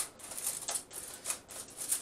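Aluminium foil crinkling and rustling in irregular crackles as hands press it loosely over a roasting tin.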